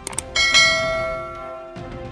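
YouTube subscribe-button animation sound effect: a few quick mouse clicks, then a bright bell ding that rings out and fades over about a second and a half.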